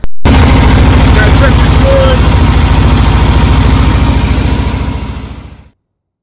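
Volkswagen Kombi engine running with a steady, rapid pulsing beat after repairs to its fuel system, fading out near the end and then cutting off.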